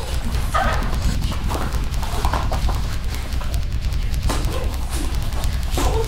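Sparring between two martial artists: short shouts and grunts with blows and stamping feet, over background music with a steady low bass.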